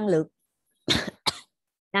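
A woman coughing twice in quick succession about a second in: a strong first cough and a shorter second one.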